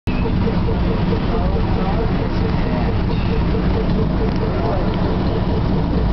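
Car engine and road rumble heard from inside a moving car's cabin, a steady low drone, with a faint tone pulsing several times a second running through it.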